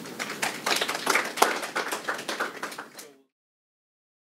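Audience applauding, a dense patter of hand claps that cuts off suddenly about three seconds in.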